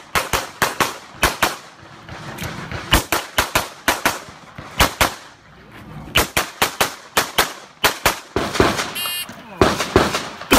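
A 9mm Glock 34 pistol firing strings of rapid shots, many in quick pairs, about two dozen in all, with short pauses between strings. Near the end there is a short electronic beep.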